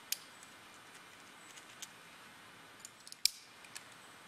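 Scattered sharp metallic clicks and clinks of climbing gear (carabiners and cams) on a harness as the climber moves, the loudest a little over three seconds in, over a faint steady hiss.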